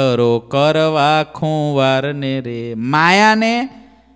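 One man singing a line of a Gujarati devotional verse solo, unaccompanied, in long held notes that bend in pitch; about three seconds in the voice slides upward, then fades out just before the end.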